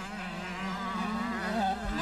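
125cc two-stroke motocross bike engine buzzing at high revs on the track, its pitch wavering slightly.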